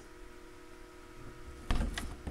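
Steady low electrical hum of several fixed tones, with a brief knock and rustle of handling near the end.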